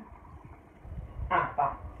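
A short pause in a man's speech with only a low rumble, then a couple of quick spoken syllables from the same man about a second and a half in.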